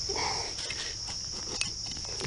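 Steady chorus of crickets, with a few soft scrapes and clicks of soil and leaf litter being loosened by hand around the base of a ginseng plant.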